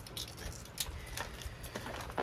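Quiet background with a steady low rumble, and a few light clicks and rustles of handling as a box cutter is brought to a plastic bag of potting soil.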